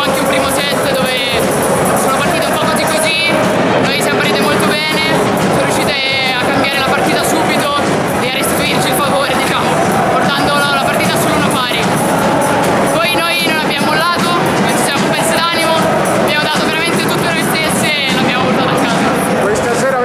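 A woman talking in Italian over loud background music.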